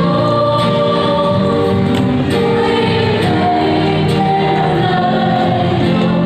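A group of students singing a song together in long held notes, accompanied live by acoustic guitar and keyboard.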